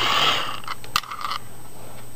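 Hand-cranked dynamo of a vintage 'Wee' Megger insulation tester whirring, winding down about half a second in. Then a quick series of sharp metallic clicks as the crocodile-clip test leads are handled.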